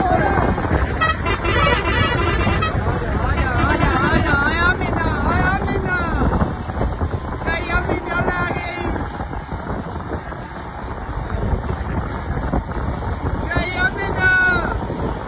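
Old Bedford buses running at speed, with steady rumble and wind on the microphone. A warbling horn sounds from about three to six seconds in, briefly again around eight seconds, and once more near the end. Voices from the riders come through as well.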